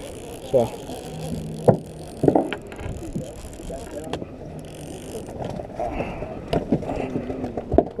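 Conventional fishing reel being cranked while a fish is fought on the line, with a few sharp knocks and voices of other anglers around.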